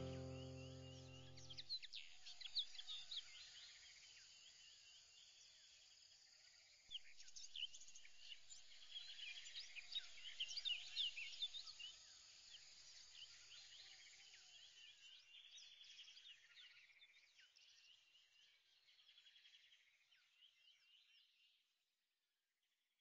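A held musical chord dies away in the first second or two, leaving faint birdsong: many quick, high chirps and rising and falling calls, busiest in the middle and gradually fading out near the end.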